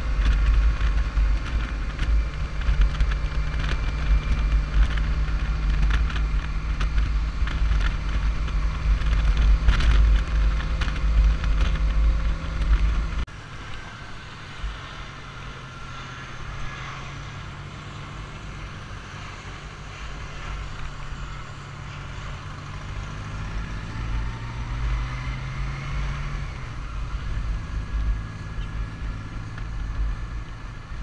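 Touring motorcycle riding at road speed, with heavy wind rumble on the microphone over a steady engine note. About 13 seconds in the sound drops abruptly to a quieter engine at lower speed, its pitch rising as it accelerates and then falling back near the end.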